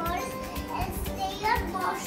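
A young child's voice saying a few words, over steady background music.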